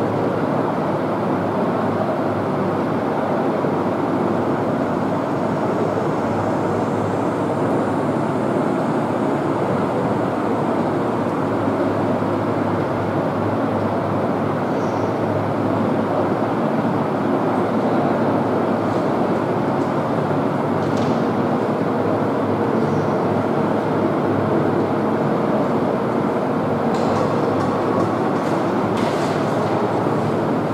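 Steady rushing background noise with a low hum throughout. A few short scratches of a marker drawing on a whiteboard come near the end.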